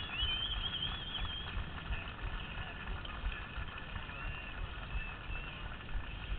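Open-air ambience on a small camera microphone: an irregular low rumble of wind on the mic, with faint, wavering high chirps in the first second or so and again about four to five seconds in.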